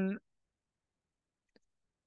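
Near silence after the tail of a spoken word, with a single faint click about one and a half seconds in: a computer keyboard key being pressed.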